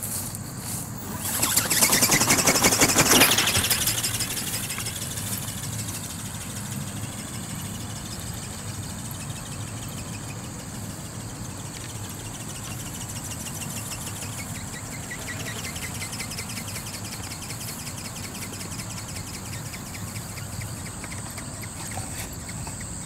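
Small robot ornithopter's brushless motor and gear-driven flapping wings whirring, loudest about two to four seconds in as it passes close, then fainter and steadier as it flies off, its pitch wavering.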